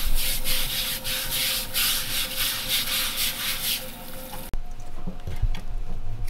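A whole raw octopus being kneaded and scrubbed by hand in rice bran in a stainless steel bowl: gritty rubbing strokes, about two or three a second, scouring off the octopus's slime. The scrubbing stops abruptly about four and a half seconds in, followed by a few soft knocks.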